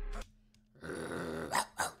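A hip-hop track cuts off abruptly a moment in. After a brief pause, a man gives a breathy laugh that ends in two short, sharp exhaled bursts.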